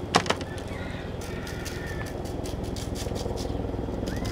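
Light taps and rattles from a shaker of dry barbecue rub and a gloved hand patting the rub onto raw pork ribs in a foil pan. The loudest taps come right at the start, over a steady low rumble, and a bird chirps faintly in the background.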